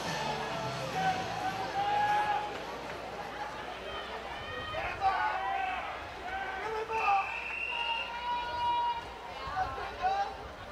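Scattered shouts and calls from spectators and teammates around an outdoor pool, several voices rising and falling at once as the backstroke swimmers wait at the wall for the start. One high note is held for about a second partway through.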